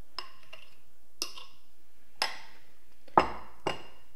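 A metal spoon clinking against a glass mixing bowl several times, about once a second, as egg mixture is scraped out of it. About three seconds in comes a heavier knock, the bowl being set down on a wooden cutting board.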